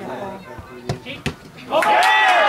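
A football struck hard on a penalty kick: a sharp thud about a second in and a second knock a moment later. Loud shouting from players and spectators breaks out near the end.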